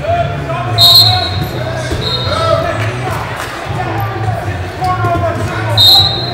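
Voices calling and shouting in a large, echoing wrestling hall, over a pulsing low rumble, with two short, shrill whistle blasts, about a second in and again near the end.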